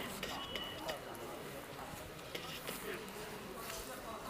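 Indistinct voices of people talking at a distance, with a few sharp clicks and knocks scattered through.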